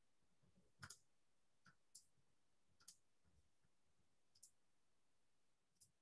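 Very faint computer mouse clicks, about six of them, spaced irregularly, against near silence.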